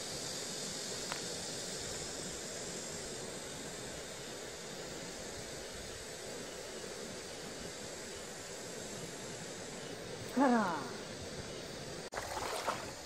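Steady high-pitched drone of summer insects in the open air, with a brief vocal sound from the angler about ten seconds in.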